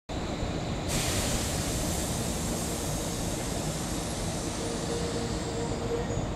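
Tobu 100 series Spacia electric train running slowly into a station: steady rolling and running noise. A hiss rises about a second in, and a steady tone joins about four and a half seconds in.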